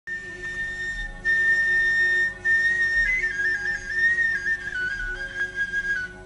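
Instrumental introduction to an Arabic song: a flute plays a high melody of long held notes that slide and step downward, broken by two short pauses in the first few seconds. A soft low accompaniment runs beneath it, with a low beat about every two seconds.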